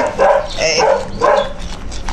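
A dog barking, about three short barks in quick succession.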